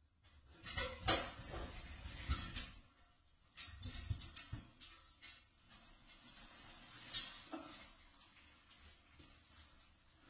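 Faint scattered knocks and clicks with some low rumbling; the sharpest come about one, four and seven seconds in.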